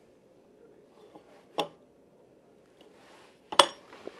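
Two sharp metallic clinks about two seconds apart, the second louder: a steel pulley block being handled and set down on a metal workbench.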